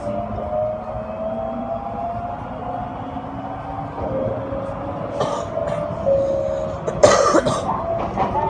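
Inside a moving train: the drive's whine rising slowly as the train gathers speed, dropping back in pitch about four seconds in and climbing again, over steady running noise. A short loud noise sounds about seven seconds in.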